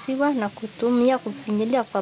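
A woman speaking in short phrases over a steady background hiss.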